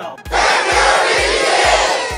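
Logo intro sting: a sudden loud burst of crowd-like shouting over a bass-heavy beat that thumps about three times a second.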